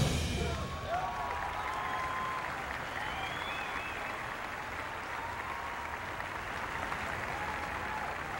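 Stadium crowd applauding and cheering, with scattered whistles and shouts, right as the drum and bugle corps' brass and drums cut off at the start.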